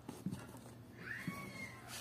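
A few light knocks from a hand handling sneakers. About a second in, a short, thin, high-pitched call rises and then holds briefly.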